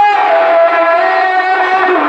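A man singing a manqabat, a devotional Urdu praise poem, into a microphone, holding a long melismatic note. The note slides down just after the start, then is held and shifts again near the end.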